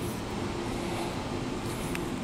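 Steady low background hum and rumble with a faint held tone, with a small click just before the end.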